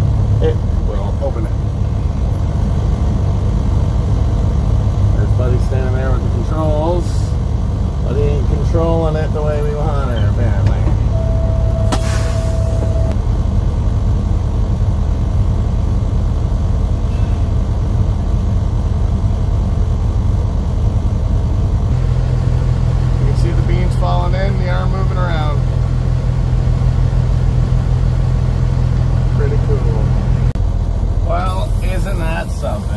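Semi truck's diesel engine running steadily at idle, heard from inside the cab. It carries snatches of indistinct voices and a short steady beep-like tone about twelve seconds in.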